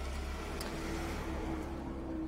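Steady low background rumble with a faint steady hum above it.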